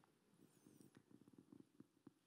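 Near silence: room tone with faint, irregular low crackles.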